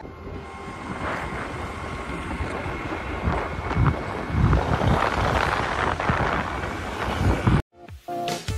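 Wind buffeting the microphone on a moving two-wheeler along a road, with road and traffic rumble underneath; the sound cuts off suddenly shortly before the end.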